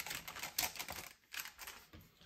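Hands handling paper pieces on a tabletop: a quick, irregular run of small clicks and rustles that thins out near the end.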